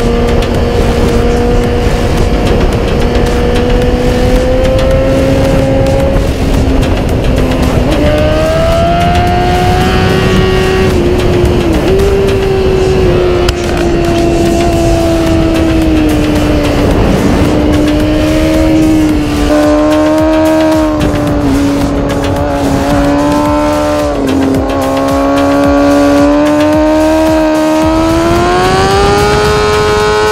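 BMW S1000RR inline-four engine running at high revs. Its whine rises and falls with the throttle, with a few sudden steps in pitch, over heavy wind rush on the microphone.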